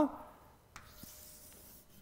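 A single click, then faint, steady scratching of chalk writing on a blackboard.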